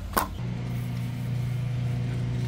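A sharp click, then a steady low machine hum that starts about half a second in and holds at one pitch.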